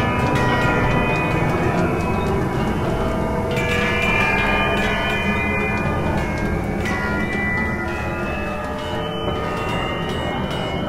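Live-coded experimental electronic music: a dense mass of many sustained pitched tones layered over a continuous low rumble, with no clear beat. New layers of tones come in about three and a half seconds in and again about seven seconds in.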